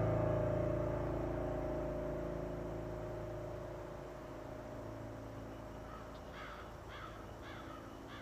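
A sustained low musical drone slowly fading away, then a crow cawing repeatedly from about six seconds in.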